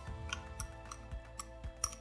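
Spatula scraping and tapping sour cream out of a plastic tub into a mixing bowl: a few scattered light clicks, the sharpest near the end, over soft background music.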